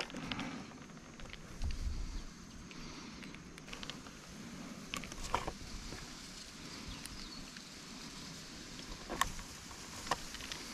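Faint handling sounds as the screws are driven by hand into the plastic back of a Stanley FatMax tape measure, with a soft bump about two seconds in and a few light clicks around the middle and again near the end.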